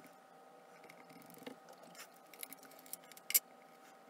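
Hands handling a polymer clay strip and tools on a cutting mat: light rustles and small taps, with one sharp click near the end, over a faint steady hum.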